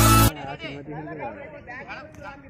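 Electronic dance music with a deep bass cuts off suddenly just after the start, giving way to several people talking over one another at a distance.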